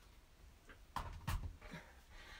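Quiet room tone with two soft clicks about a second in, from plugging in a heat tool off camera.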